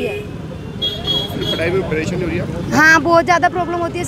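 Road traffic: a motor vehicle going past with engine and tyre noise, then people's voices near the end.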